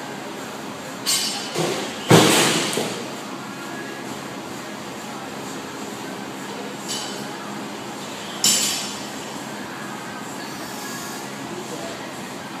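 Sharp metallic clanks and knocks of weight-room equipment, five in all with the loudest about two seconds in, each ringing briefly, over steady room noise.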